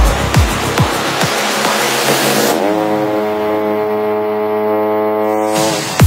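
Electronic dance music in a breakdown. The deep kick-drum beat stops about a second in and leaves a rushing noise. Halfway through, a pitched tone slides upward into a held chord, which cuts off at the end as the beat drops back in.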